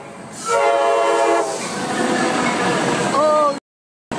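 Train horn sounding one long, steady blast about half a second in, followed by the loud, even noise of the train running along the rails, which cuts off abruptly shortly before the end.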